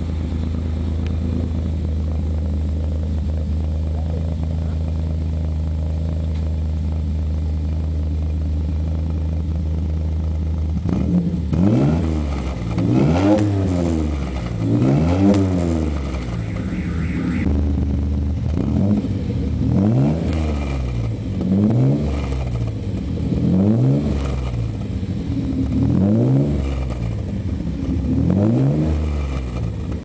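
A car's V6 engine heard at the exhaust tailpipe, idling steadily for about the first eleven seconds. It is then revved over and over, the pitch rising and falling roughly every two seconds.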